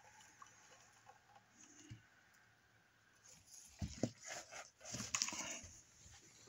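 Handling noise from a Topshak NPS3010W bench DC power supply in a sheet-metal case as it is tipped over and set back down on carpet: faint rubbing and soft knocks, with clusters of knocks about four seconds in and again around five seconds.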